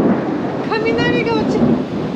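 Thunder rumbling through a heavy rainstorm, a loud continuous roll with rain noise underneath.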